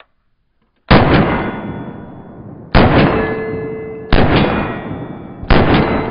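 Four handgun shots spaced roughly a second and a half apart. Each starts sharply and is followed by a long, fading tail.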